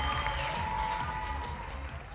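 Music playing with an audience cheering after a dance performance, all fading steadily quieter.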